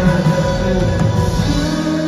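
Live indie rock band with electric guitars, bass and drums playing loudly in a hall. About one and a half seconds in, the busy low end drops away, leaving sustained guitar chords ringing.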